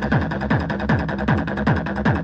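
Fast electronic techno from a mixed DJ set: a kick drum beating about three times a second, each beat dropping in pitch, with ticking hi-hats over a dense steady synth layer.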